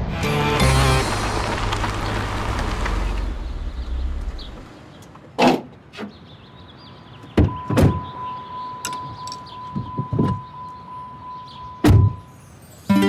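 A loud musical logo sting with a whooshing sweep for about four seconds. Then quiet sound from a scene around a Jeep: a few sharp knocks and thuds, with a steady high beep in the middle.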